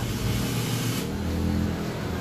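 RV rooftop air conditioner switched to cool while running on a single generator: a steady low hum from the unit, with a hiss for about the first second. The compressor start is straining the generator, which surges and makes the lights flicker, the trouble a hard-start capacitor is meant to cure.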